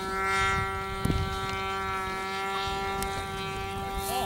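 A radio-controlled ultralight model plane's motor and propeller in flight, giving a steady high-pitched drone. A couple of dull low knocks come about a second in.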